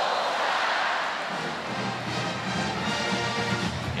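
A stadium crowd cheering over band music. The cheer is strongest at the start, and the music grows steadier and more prominent from about halfway through.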